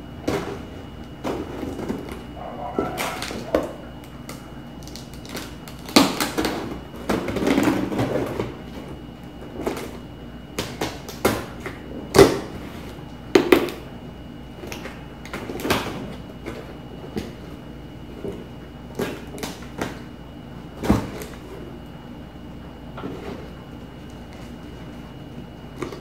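Scissors cutting through packing tape on a cardboard box, with the scrape of the blade along the seams and the cardboard flaps being pulled and knocked. The sound comes as irregular sharp clicks and knocks, with longer rustling, scraping stretches in the first half.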